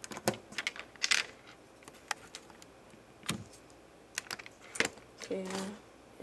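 Irregular small plastic clicks and taps from fingers handling a Lego minifigure.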